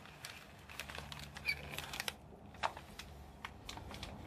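A run of irregular light clicks and taps, with one sharper tap a little after two and a half seconds in.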